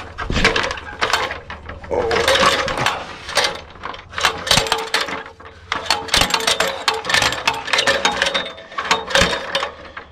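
Fibreglass extension ladder being lowered: the fly section slides down its rope and pulley, its rung locks clattering over the rungs in a dense run of clicks and rattles.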